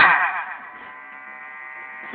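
A word from a man's voice cut off right at the start, its echo dying away over about half a second, then a steady electrical buzz with many even overtones, like the hum of an amplified sound system left running between phrases.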